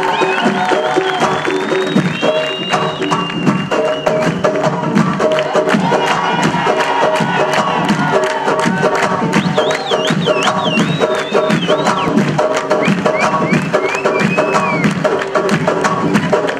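Live Tunisian ensemble of frame drums and melodic instruments: the drums beat a dense, fast rhythm under sustained melody, with a high, trilling line in the middle, and a crowd cheering.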